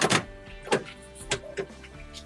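A handful of sharp metallic clicks and clunks from the Isuzu FSR 90's cab-tilt mechanism being worked by hand as the cab is released for tilting, over steady background music.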